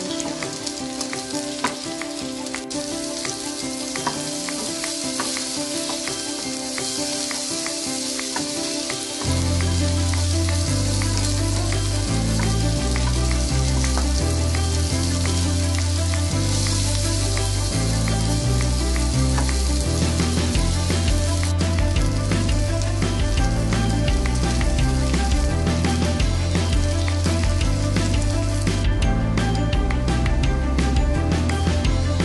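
Beef pieces sizzling in oil and butter in a nonstick wok, with a spatula stirring through them in scattered clicks and scrapes. Background music plays throughout, and a deep bass line comes in about a third of the way through, making the music louder.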